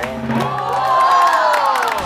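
A crowd of people cheering together, one long drawn-out shout that rises and then falls in pitch.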